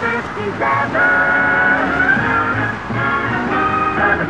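Music with several long held notes, fairly loud.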